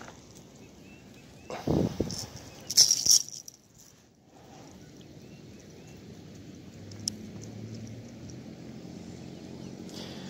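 A snagged blue tilapia is landed by hand: two short bursts of splashing and handling noise, the second brighter and hissier, then a faint steady low hum in the second half.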